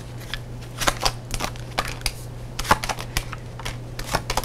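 A deck of tarot cards being shuffled by hand: a run of light, irregular card flicks and slaps, over a steady low hum.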